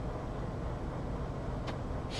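Steady low background rumble with a light hiss, and a single faint click near the end.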